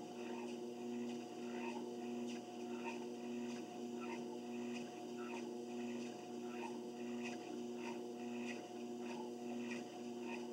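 Treadmill in use: the drive motor hums with a steady tone while walking footsteps land on the belt in an even rhythm, roughly two steps a second.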